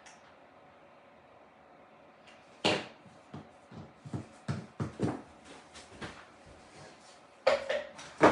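A few light knocks and taps from things handled on a tabletop, a hot glue gun among them set down on the mat, after a near-quiet start.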